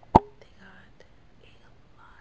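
A single sharp knock just after the start, with a brief ring, then faint rustling and a soft whispered voice.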